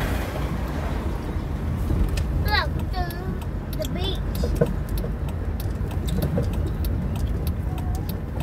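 Inside a moving car: the steady low rumble of the engine and tyres on the road. Brief voices come in about two and a half to four and a half seconds in, and scattered light clicks follow later.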